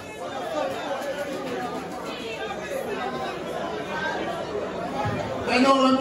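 Voices talking and chattering, then a man's voice, loud over a microphone, comes in about five and a half seconds in.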